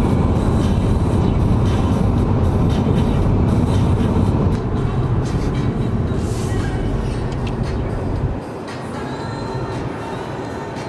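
Loud, steady road and wind noise of an Audi car travelling at motorway speed, with music faintly underneath. The noise drops to a lower level about eight and a half seconds in.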